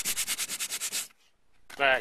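Fine sandpaper rubbed by hand over a cured black resin surface on a fiberglass hull in quick, short back-and-forth strokes, knocking down small bumps. The strokes stop about a second in.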